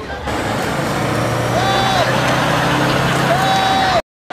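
A heavy road vehicle's engine running with a steady low hum amid street traffic noise, with two short higher tones, one about halfway through and one near the end.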